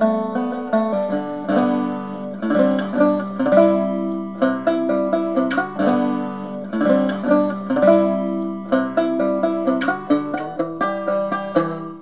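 Four-string CB Gitty Hubcap Howler, a fully acoustic fretted cigar box guitar with a metal hubcap resonator, being picked. A melody of plucked notes rings over steady low notes and fades out at the very end.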